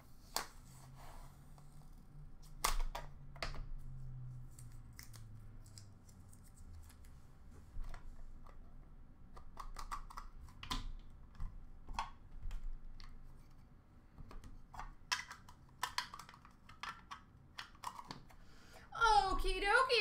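Hockey trading cards and torn foil pack wrappers being handled: scattered sharp clicks and short rustles as cards are pulled and sorted.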